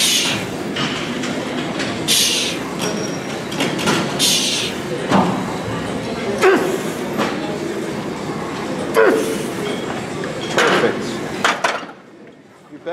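A man breathing hard and straining through repetitions on a plate-loaded leg press, with sharp forced exhalations about every two seconds at first and then shorter effortful grunts, over a steady rumble of the machine and gym noise.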